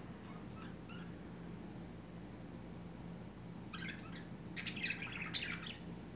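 Pet budgerigars chirping quietly: a few faint chirps in the first second, then two short runs of chattering calls about four and five seconds in.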